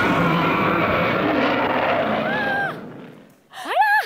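A monster's cry, the deep, rasping roar of the kaiju Merlyger, played back over the event's sound system. It fades out about three seconds in, just after a short high held tone. Near the end a woman gives a short rising exclamation.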